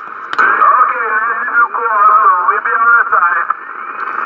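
A distant station's voice received on a Yaesu FT-840 HF transceiver, coming from its speaker thin and narrow-toned over a steady hiss of band noise. It is too garbled to make out words, and it stops shortly before the end.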